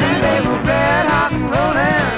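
A 1977 pop song playing from a 45 rpm vinyl single: a full band, with a melody line sliding up and down in pitch over a steady bass.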